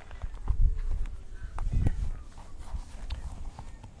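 Irregular low rumbling and a few short knocks: wind and handling noise on an outdoor microphone while the person moves up to the camera.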